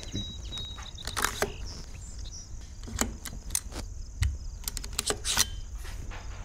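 A handful of short, sharp metallic clicks and knocks spread over a few seconds as a freshly assembled AR-style rifle, a Colt 901 lower fitted with an LE6940 upper, is picked up and handled.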